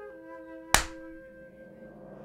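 Clapperboard clap sound effect: one sharp crack about three-quarters of a second in, over woodwind music whose held notes die away shortly after.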